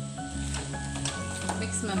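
Background music with steady held notes over the sizzle of cabbage and potato Manchurian frying in sauce in a small pan, with a few light clicks.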